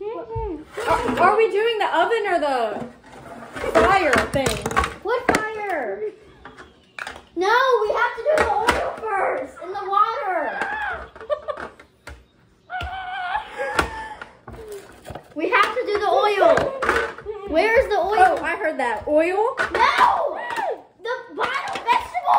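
Young voices chattering and exclaiming almost throughout, with a few short thunks.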